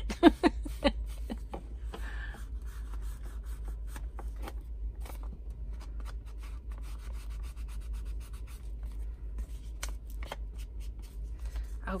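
Foam ink blending tool rubbed in many quick, short strokes along the edges of a paper envelope pocket, scuffing against the paper as it inks and distresses the edges.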